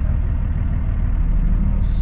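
A diesel semi truck's engine running steadily, a constant low rumble.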